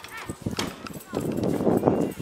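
A person's voice speaking in short phrases, with a few short knocks in between.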